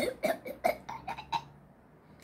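A child's coughing fit: a rapid string of short coughs lasting about a second and a half, fading toward the end, from a child sick with the flu.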